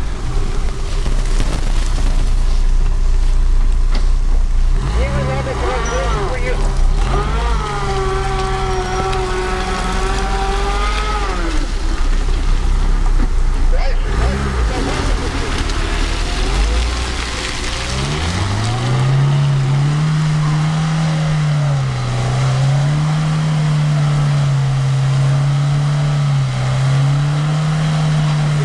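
Lada 4x4 Urban's 1.7-litre four-cylinder engine revving hard under load as it climbs a muddy slope with wheels spinning, its centre differential unlocked and tyres at a high 2.2 bar. The engine note rises and falls with the throttle. In the last third it climbs to a high, strong note that wavers up and down.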